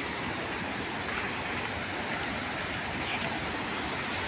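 Steady rushing roar of a waterfall running in full, muddy monsoon flow.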